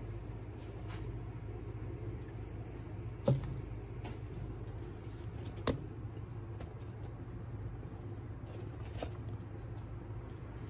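A steady low hum of room noise, with a few small knocks or clicks, the two clearest about three and six seconds in.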